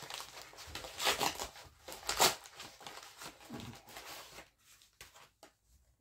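Parcel packaging being torn and crinkled open by hand, in rustling bursts that are loudest about one and two seconds in, then thinning to a few small clicks and rustles.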